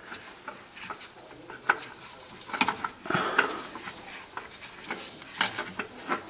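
A spin-on oil filter being screwed on by a gloved hand: intermittent light clicks and scraping against its metal mount.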